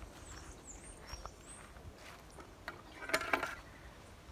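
Faint countryside ambience with a few short, high bird chirps in the first second and a half, and a brief louder sound about three seconds in.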